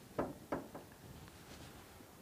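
Canoe paddle knocking twice against the side of the canoe: two short knocks about a third of a second apart, early on, over faint outdoor background.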